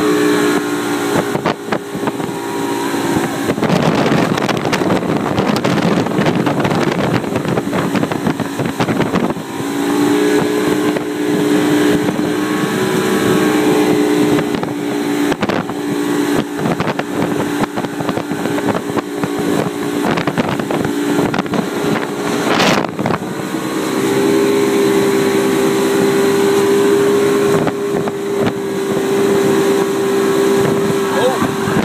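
Motorboat engine running at speed with the wake rushing past and wind on the microphone. Its steady note is drowned by rushing noise for a few seconds early on, then comes back and settles a little higher near the end.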